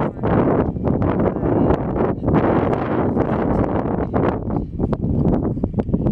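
Strong wind blowing across the camera's microphone: a loud, rough rushing noise, heaviest in the low end, that swells and dips unevenly in gusts.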